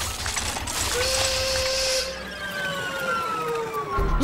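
Cartoon sound effects of a fanciful lab machine running: rapid mechanical clicking and clatter over a low chugging pulse, a burst of steam hiss, and from about a second in a whistle-like tone that slowly falls in pitch.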